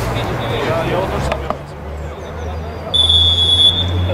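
Referee's whistle: one steady blast of under a second, about three seconds in, after some distant shouting from players.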